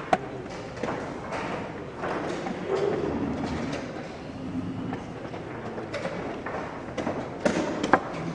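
A few sharp knocks of chess pieces set down on a board and chess clock buttons struck in a fast game, one just after the start and a cluster near the end, over steady room murmur.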